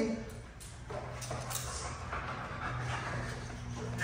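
An excited boxer dog on a leash panting and fidgeting, with a few light clicks in the first second or so.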